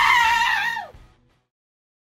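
A woman's high-pitched, drawn-out cry of "no!" that fades out about a second in, followed by dead silence.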